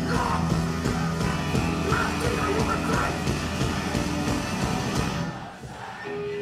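Hardcore punk band playing live: distorted guitars, bass and drums with shouted vocals. The music thins out and drops away briefly near the end.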